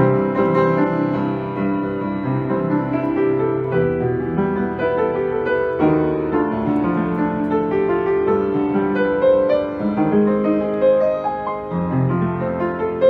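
Knabe 47-inch studio upright piano played in sustained, overlapping chords with a big, full tone. Fresh chords are struck at the start and again about halfway through.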